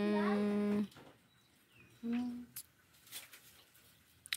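A person's voice holding one steady hummed note for about a second, then a shorter note about two seconds in, followed by a few light clicks.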